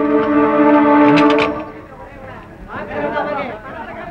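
A steady held musical note with a horn-like tone, cutting off about a second and a half in, followed by a voice near the end.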